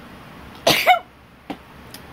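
A single short cough a little over half a second in, followed about half a second later by a faint click.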